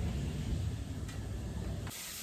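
A low, steady rumble with no clear events, cut off abruptly near the end.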